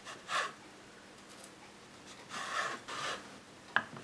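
Kitchen knife slicing through thin rolled dough onto a wooden chopping board: three short scraping strokes, the first about half a second in and two more later, with a sharp tap of the blade near the end.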